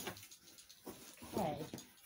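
A quiet room with one short spoken word a little past the middle, and faint low noise around it.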